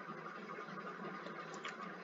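Faint steady hiss of room tone and recording noise, with no distinct event.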